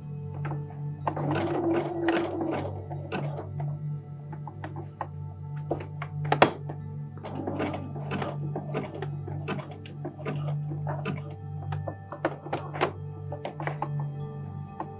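Domestic sewing machine doing free-motion stitching in an uneven, stop-start way, with irregular thunks and clicks as the fabric is shunted under the foot; one knock about six and a half seconds in stands out. Music plays in the background.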